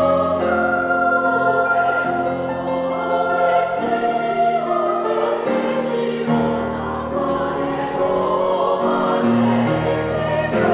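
Women's choir singing a Latin sacred piece in held, sustained chords, the voices moving together from note to note with hissing 's' sounds cutting through, accompanied by grand piano.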